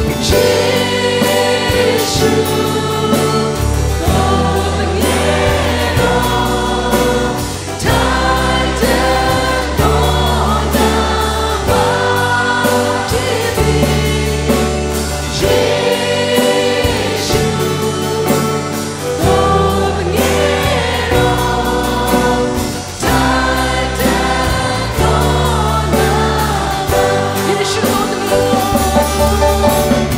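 Live worship band: several singers on microphones leading a Burmese-language worship song together, backed by acoustic guitars and a bass line whose low notes change about every two seconds.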